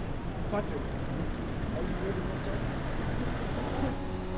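Outdoor ambience: a steady low hum of distant road traffic, with a faint voice heard briefly about half a second in.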